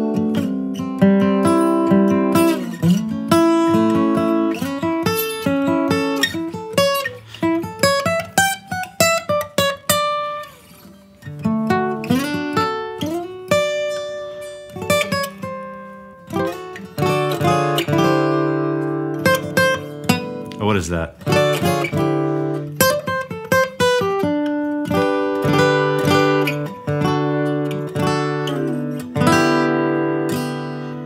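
Steel-string acoustic guitar played with a pick: melody lines and chord fragments, with a few sliding notes. The playing briefly thins out about ten seconds in, then carries on.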